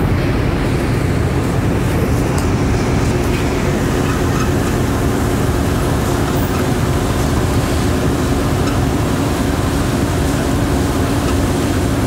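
A ferry's engines droning steadily: a constant low rumble with a steady hum on top.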